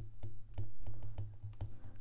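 Stylus tip tapping and sliding on a tablet's glass screen while a word is handwritten: a quiet, irregular string of light clicks.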